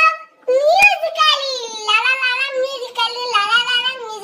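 A young girl's high-pitched voice singing long, wavering held notes, with a short knock about a second in.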